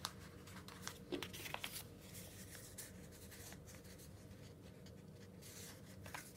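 A sheet of paper being folded and creased by hand: faint rustles and small crinkling clicks, mostly in the first two seconds, then quieter handling.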